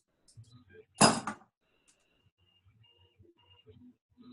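One sharp clatter lasting under half a second, about a second in, as the finished print is handled off a desktop 3D printer's blue build plate, heard over a video-call link. Faint handling noise follows.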